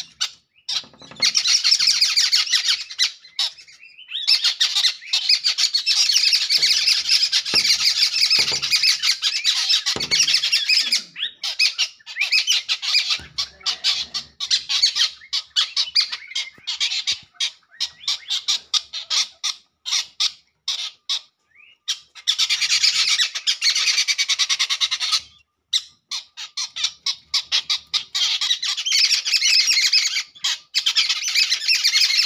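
Small birds chattering close by: long bouts of rapid, dense, high chirping broken by short pauses and single calls, with a few low knocks in the first half.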